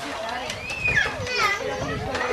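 Children's voices talking and calling out in high pitches over general chatter, the sound of kids playing.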